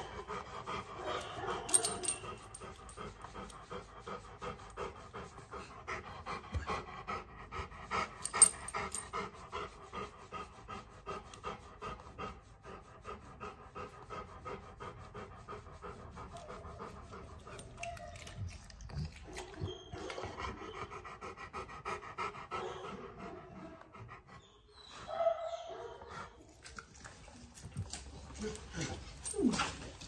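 Rottweiler panting close to the microphone, a quick steady rhythm of breaths, with a couple of sharp clicks early on.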